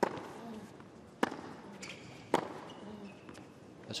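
Tennis rally on a hard court: sharp racket-on-ball strikes about a second apart, three loud ones and a lighter one at the start.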